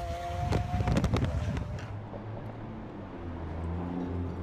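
Wind and road noise heard from inside a car travelling fast on a motorway, with a faint steady engine tone. About two seconds in this gives way to a quieter low, steady hum.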